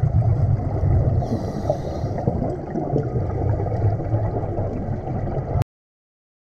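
Underwater scuba exhaust bubbles from a diver's regulator, a low rumbling gurgle, which cuts off abruptly about five and a half seconds in.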